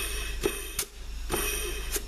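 Compressed air from an air nozzle hissing, with a slight whistle, into the K1 clutch passage of a 09G six-speed automatic transmission during an air check, which tests that the clutch applies and holds pressure. Three blasts, the last the longest.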